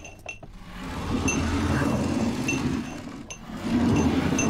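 Short, high glassy clinks repeating about once a second over a low, swelling drone, with a couple of sharp clicks at the start.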